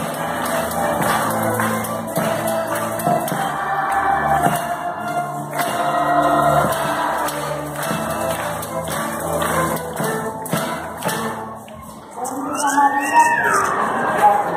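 Youth string orchestra of violins, cellos and double bass playing, with some light percussive strikes. The music stops about twelve seconds in, and a brief voice-like sound follows.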